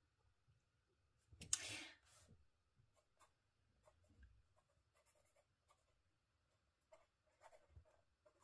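Pen writing on journal paper, faint and intermittent: soft scratches and ticks of the nib as the letters are formed. A short louder rustle comes about one and a half seconds in.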